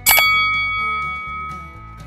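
A single bright bell ding, a notification-bell sound effect, struck once and ringing on with a few clear high tones that fade over about two seconds.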